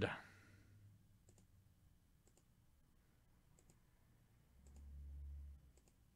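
Computer mouse button clicked about five times, roughly once a second, faint against near silence, with a brief low hum a little before the end.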